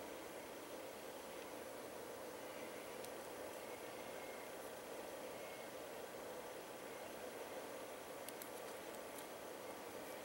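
Low, steady hiss of room tone with a few faint ticks, one about three seconds in and a couple near the end.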